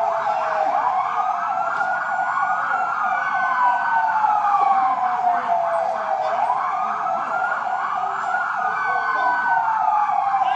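Several emergency-vehicle sirens wailing out of step, each slowly rising in pitch, holding and falling again, over a fast pulsing tone.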